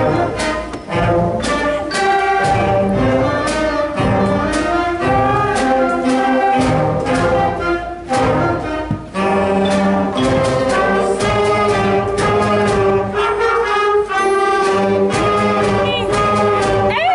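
A middle school concert band playing a piece: brass and woodwinds sounding together in held chords, with regular percussion strokes through the music.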